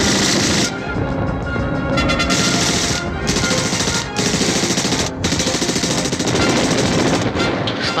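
Long bursts of rapid machine-gun fire, broken by a few brief pauses, with music underneath.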